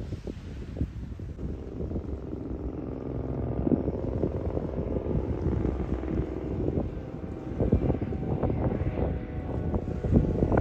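A steady engine drone that grows louder a couple of seconds in and holds, with wind buffeting the microphone.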